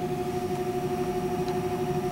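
Room tone in a lecture room: a steady machine hum with a faint hiss, as a pause falls between sentences.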